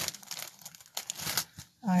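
Folded cotton kurtis being shuffled and lifted by hand on a table: irregular rustling of cloth with a few light ticks, stopping just before the end.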